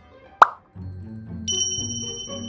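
A cartoon-style 'plop' sound effect, one short blip sweeping quickly up in pitch, about half a second in, followed by background music and a bright sparkling chime with high held tones near the end.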